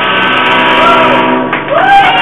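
Live rock band with electric guitars holding a sustained chord, with a voice singing a rising and falling line near the end.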